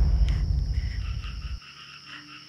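Night crickets chirping in a steady pulse, about four chirps a second, over a thin high insect whine. Under them a low rumble dies away and cuts off about one and a half seconds in.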